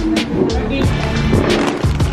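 Background music with a quick, steady drum beat over a bass line.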